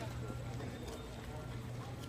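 Footsteps of a group of people walking on stone paving, with indistinct voices of other visitors in the background.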